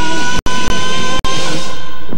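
Rock music soundtrack on held, sustained notes, with the sound cutting out very briefly three times.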